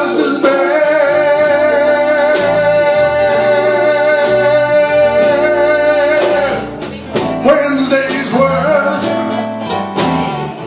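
Live slow blues from a small acoustic band: a male singer holds one long note for about six seconds over guitars and bass, then the band carries on with shorter phrases and strummed chords.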